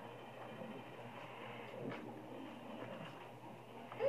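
Faint, soft handling sounds of a cornstarch-and-water mixture (oobleck) being worked and squeezed between the hands, over a steady low room hum.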